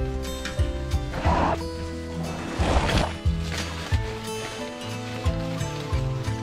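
Background music of sustained, shifting synth chords, with two short rustling bursts about one and three seconds in.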